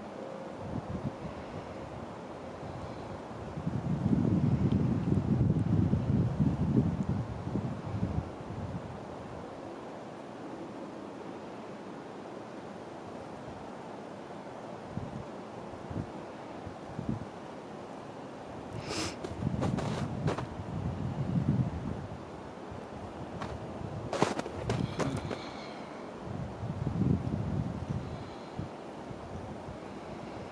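Wind buffeting the camera microphone in low rumbling gusts over a steady hiss, the strongest gust about four seconds in. A few sharp clicks come near the middle and again a little later.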